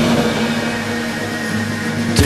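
Rock song recording: a single long held note over a sparse, quieter passage with no drum hits and little bass.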